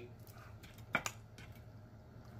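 Wooden corn dog sticks clicking against one another as they are handled and counted in the hands: a few small faint clicks, the clearest two close together about halfway through.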